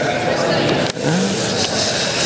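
Indistinct murmur of several voices in a large chamber over a steady hiss, with no single clear speaker.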